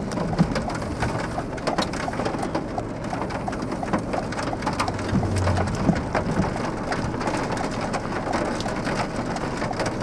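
Rain hitting a vehicle's windshield and body from a thunderstorm: a steady, dense run of small drop impacts.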